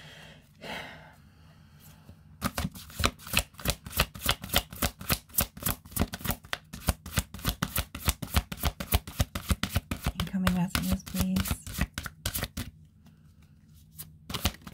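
A deck of tarot cards being shuffled by hand: a rapid, continuous run of soft card slaps and flicks that starts a couple of seconds in and stops shortly before the end.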